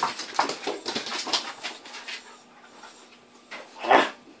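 A Jack Russell x Border Terrier cross puppy playing: a quick run of short, noisy sounds over the first second and a half or so, quieter after that, then one louder short sound near the end.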